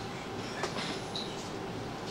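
Steady low rumble of room noise in a hall, with a few faint clicks and light taps.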